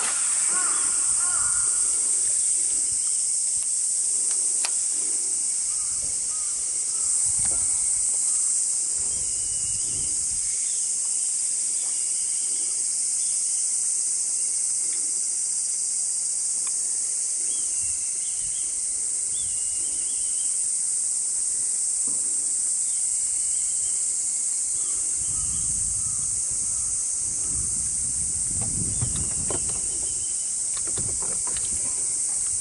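A steady, high-pitched chorus of summer insects from the wooded shore, with faint bird chirps here and there. There is some low rumbling near the end.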